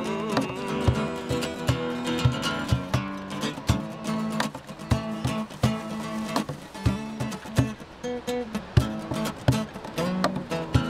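Acoustic guitar strummed in steady chords with a cajon beating a rhythm under it, an instrumental passage with no singing.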